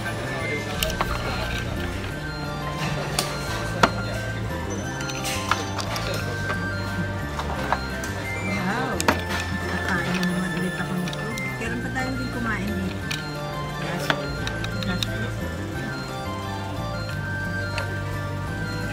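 Background music with a bass line stepping between notes, with a few sharp clinks of tableware over it.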